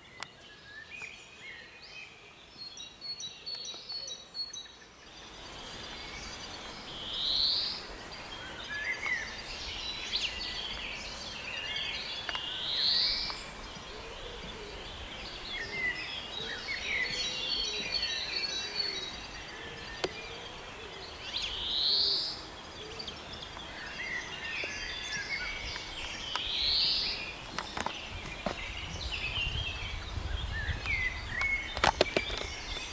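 Wild birds singing: one bird repeats a loud rising whistled note about every five seconds, over quieter twittering and chirping from others.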